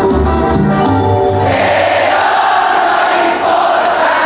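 Latin dance music with a pulsing bass line playing over a sound system, breaking off about a second and a half in, after which a crowd cheers and shouts.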